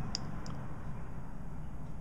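Two faint clicks in the first half second: a test probe arcing as it touches a transmission shift solenoid's lead, with no click from the solenoid itself. The solenoid is not cycling under voltage, the sign that it has failed. A steady low traffic rumble runs underneath.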